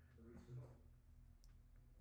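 Near silence: room tone, with a brief faint murmur of voice about half a second in and a single faint click about one and a half seconds in.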